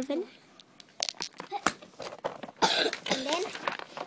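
A small glass jar clinking and knocking as it is handled, with a sharp click about a second in as the loudest sound.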